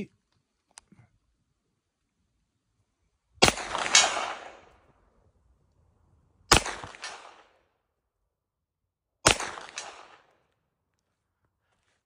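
Three single gunshots from a 9mm Glock pistol with a 16-inch carbine barrel, about three seconds apart, each trailing off in an echo. About half a second after each shot comes a fainter sound, the bullet hitting a distant steel target.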